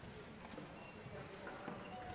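Quiet concert hall with faint shuffling and scattered light knocks as band members move about the stage.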